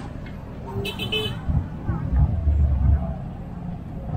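A vehicle horn toots twice in quick succession about a second in, over traffic noise and background voices. A heavy low rumble follows, loudest from about one and a half to three seconds in.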